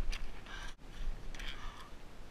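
Snowshoe steps and trekking-pole plants crunching and scraping in snow, a few irregular crunches.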